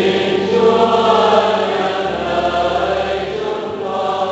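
Choir and congregation singing the short sung response to a petition in the Prayers of the Faithful, in held, sustained chords.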